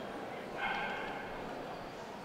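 A dog's short high-pitched whine, about half a second long, starting just over half a second in, over a steady background murmur.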